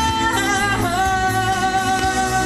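A woman singing live into a microphone, sliding into a long held note about a second in, over backing music with a low steady bass.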